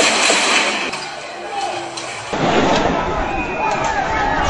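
Voices shouting over a phone-recorded street scene, with a loud, sharp bang right at the start.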